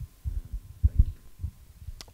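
A few short, dull low thumps from a handheld microphone being moved and handled.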